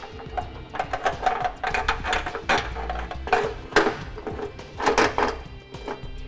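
Metal hardware clinking and rattling: a carriage bolt and square-hole spacer block on a fish wire knocking against the car's steel frame as they are fed into the mounting hole, with several sharper knocks in the second half. Background music plays throughout.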